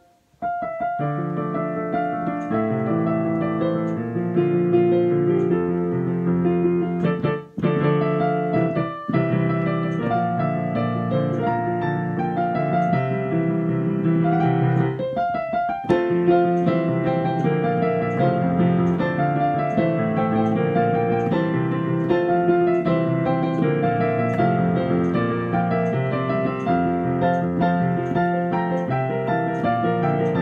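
Yamaha Clavinova digital piano playing a busy two-handed solo arrangement of a pop-rock song, with full chords over a moving bass line. The playing breaks off for an instant right at the start and briefly again around 7 and 9 seconds in.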